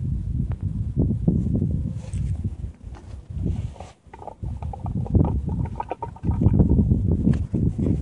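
Loud, irregular low rumbling on the microphone, rising and falling, with a few faint clicks.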